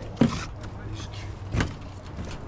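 A steel trowel knocks twice against mortar and the brick chimney base, about a second and a half apart, the first knock the louder.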